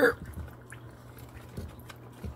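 Faint water drips and small knocks as a piece of spider wood is pulled out of a small aquarium, over a low steady hum.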